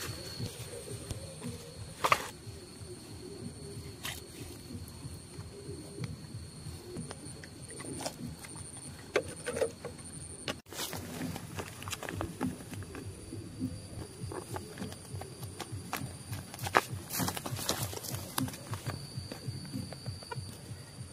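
Steady high-pitched insect trill, pulsing briefly in the middle, over rustling and footsteps in dry brush, with a few sharp clicks, the loudest about two seconds in and again near the end.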